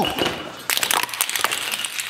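Many small white ball ornaments dropping off a magnetic levitation ornament tree, clattering and bouncing on a concrete floor. It is a rapid, dense run of small hits starting under a second in.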